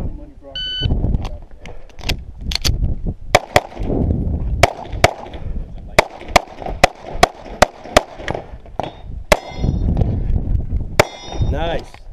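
An electronic shot timer beeps once to start, then a pistol fires a string of shots at irregular spacing over about ten seconds. Steel targets ring after some of the hits, most clearly near the end.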